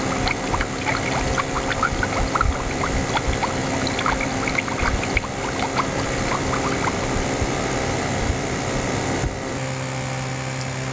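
Bubbling sound effect: a rapid, uneven run of short pitched blips over a steady noise bed, stopping about seven seconds in. About nine and a half seconds in the background changes to a steady low hum.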